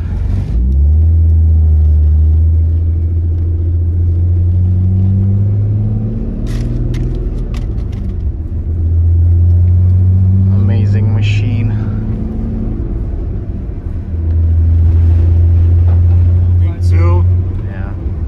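The freshly rebuilt engine of a 1993 BMW E34 wagon, heard from inside the cabin, pulling away on its first test drive. Its pitch climbs in three pulls, with dips at the two gear changes about seven and thirteen seconds in.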